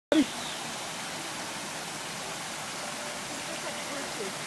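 Steady rush of running water, an even hiss with no rhythm, with a short loud voice sound right at the start and faint voices near the end.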